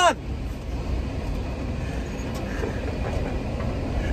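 Steady low rumble of engine and road noise heard inside the cab of a moving van.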